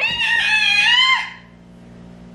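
A toddler girl's high-pitched scream: one held note lasting just over a second that then stops. It is a playful scream for attention, not one of distress.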